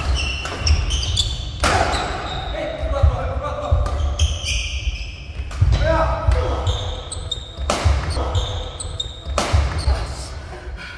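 Badminton doubles rally in a large echoing hall: several sharp racket strikes on the shuttlecock about two seconds apart, shoes squeaking and feet thudding on the court floor, and short shouts from the players.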